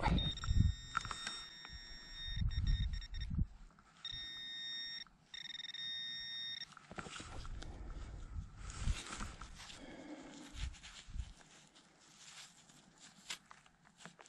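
A metal detecting pinpointer sounding a steady high electronic tone, signalling metal at the probe tip, cut off briefly twice over about six seconds. After it, soft rubbing and rustling of gloved fingers working soil off the find.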